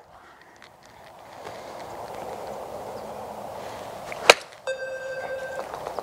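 A golf wedge striking the ball off a hitting mat: one sharp crack about four seconds in, over a steady background hiss. A steady pitched electronic tone follows about half a second after the strike and lasts about a second.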